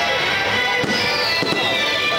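Aerial fireworks shells bursting, with a couple of sharp bangs about a second in, over music with held notes and a high tone sliding downward.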